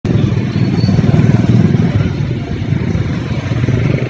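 Motorcycle engine running while riding, heard from the pillion seat: a steady low rumble.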